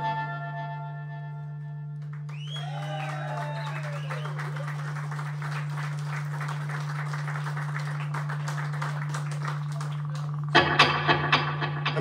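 Audience clapping and cheering, with a few whoops, for several seconds after a live band's song ends, over the steady hum of the stage amplifiers. The applause starts after a brief lull of just amp hum and dies away as a man starts talking near the end.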